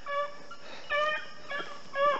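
Young rabbit-hunting hounds baying in chase, close on a rabbit: three short, high, held notes about half a second apart.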